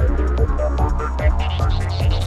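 Psytrance music: a steady kick drum a little over twice a second over a sustained deep bass line, with busy synth notes and short gliding sweeps above.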